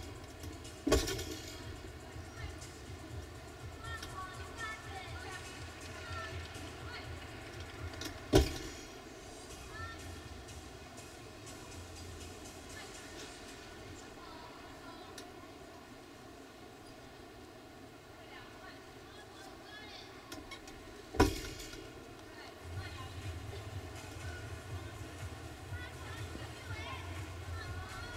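Three sharp thuds of a gymnast's feet landing on a balance beam, near the start, about eight seconds in, and about three quarters of the way through, over the steady murmur of a large arena crowd.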